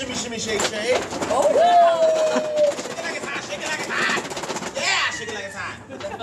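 Foil lids of aluminium catering trays crinkling and rattling in quick crackles as they are lifted and handled.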